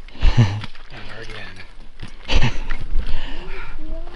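Footsteps of a hunter in waders stepping out of shallow marsh water and through tall dry grass, with rustling and two heavy footfalls about two seconds apart.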